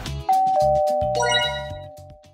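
A two-note ding-dong chime, a higher note then a lower one, each held and slowly fading, with a brighter bell-like strike about a second in. Background music with a low bass line runs underneath and drops out near the end.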